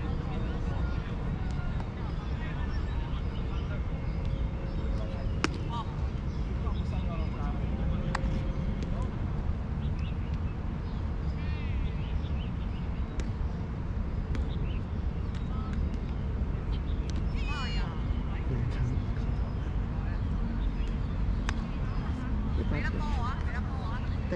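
Distant players' voices calling across an open ball field over a steady low rumble, with a few sharp knocks, about five seconds in and again near the middle.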